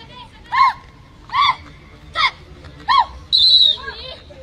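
Players' loud shouted 'kho!' calls, four in quick succession about one every 0.8 seconds, the chasers' call that passes the chase from one sitting teammate to the next in kho kho; then a short, shrill referee's whistle near the end.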